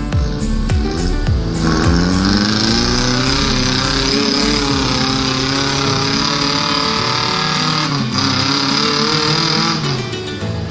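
Off-road SUV's engine revving hard under load as it churns through deep mud and water, its pitch rising and falling. It briefly dips near the end, then cuts off suddenly.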